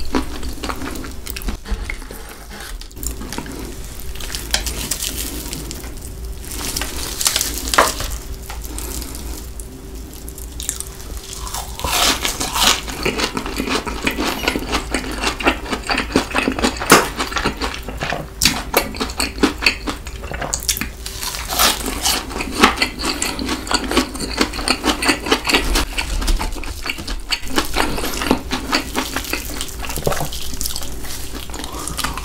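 Close-miked chewing of Cheetos-crusted fried chicken and cheese sticks: crisp crunching mixed with wet, sticky mouth sounds, growing busier and louder from about twelve seconds in.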